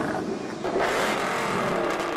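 A car engine revving, used as an intro sound effect, swelling louder about two-thirds of a second in.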